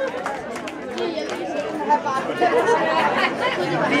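Crowd chatter: several people talking over one another at once.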